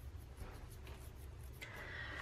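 Faint rustling and rubbing of paper as a hand brushes over the pages of a paper planner, in soft scattered scratches.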